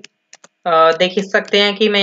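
Computer keyboard keys clicking as code is typed, with a couple of keystrokes in a short pause, then a man's voice talking over the typing from a little over half a second in.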